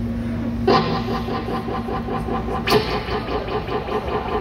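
Electric guitar through a stage amplifier: a chord is struck about a second in and left ringing with a pulsing sustain, then struck again near the end. Before the first strike a steady hum sounds.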